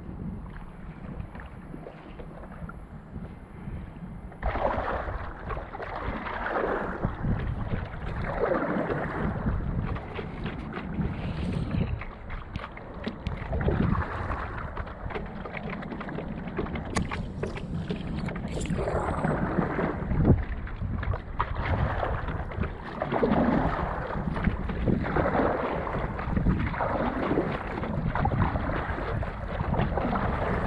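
Stand-up paddleboard paddle strokes dipping and pulling through calm water, a swish every second or two, over a low rumble of wind on the microphone. The strokes start about four seconds in.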